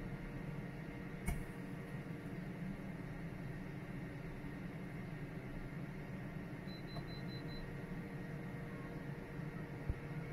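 JVC JK-MB047 air fryer grill running with a steady whir from its convection fan during the final seconds of its cooking program. There is a single click about a second in, and a faint quick run of about five high pips around seven seconds in.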